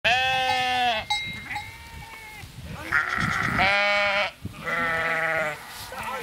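Sheep in a flock bleating, four calls one after another, the second one fainter.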